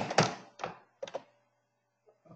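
A few soft taps on computer keyboard keys, one about half a second in and two close together about a second in.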